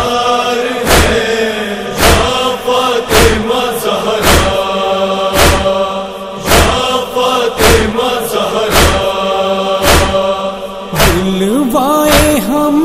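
Nauha backing chorus of male voices chanting held tones, with a sharp beat about once a second. A solo voice comes back in near the end.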